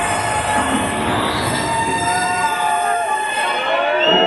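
Hardcore techno played loud over a club sound system, in a breakdown: a dense distorted wash with high synth tones that slide up and down in pitch. The kick and bass drop out about two and a half seconds in.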